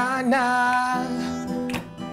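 Acoustic guitar strummed live under a voice singing a held "na", the note sliding up into place and held for about a second before the guitar carries on alone, with a sharp strum near the end.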